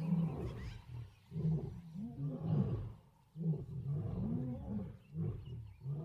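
Big cat growling in a series of short, low roars, with a brief pause about three seconds in.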